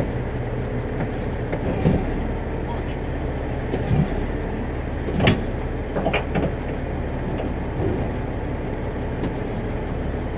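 A heavy vehicle's engine idling in a steady low rumble, with a handful of short metal clanks, the loudest about five seconds in, as a tow truck's wheel-lift fork is fitted under a bus's front tyre.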